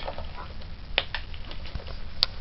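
Goose feeding from a bowl of dry pellets, its bill clicking and rattling on the feed and the bowl, with two sharper clicks close together about halfway through.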